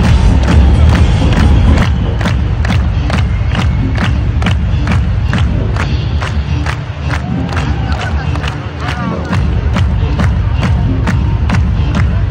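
Large arena concert crowd cheering over loud amplified music with heavy bass, and a steady beat of sharp hits about three a second.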